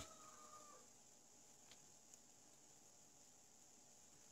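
Near silence: room tone, with a faint held call in the first second and a couple of soft clicks as wires are handled.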